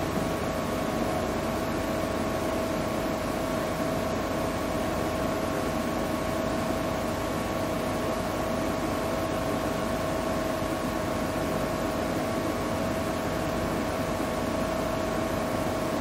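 Steady background hum and hiss of a church hall, with two thin steady tones running through it and no other sounds.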